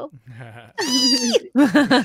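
A pet's single short squeal that drops away at its end, followed straight away by laughter.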